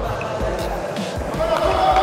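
Echoing indoor sports-hall sound with background music: players' and onlookers' voices, and irregular dull thumps. The voices grow louder near the end.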